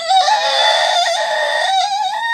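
A child's long, high-pitched wailing cry of feigned pain, held on one wavering pitch for about two and a half seconds before a short second cry.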